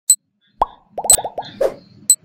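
Cartoon sound effects for an animated number countdown: two sharp high clicks about a second apart, a plop, a quick run of about five pops, and a short bark-like sound near the end.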